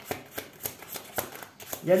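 Tarot cards being shuffled by hand: a quick, irregular run of crisp card clicks and flicks, with speech starting again near the end.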